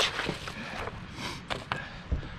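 Plastic latches of a hard shotgun case being snapped open by hand: a few short, sharp clicks over a low background rumble.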